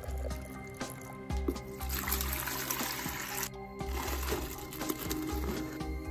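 Water pouring into a plastic jug, heard for about a second and a half near the middle, over steady background music.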